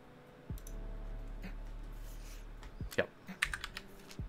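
Computer keyboard typing: a few separate keystrokes, then a quick run of several keystrokes in the second half.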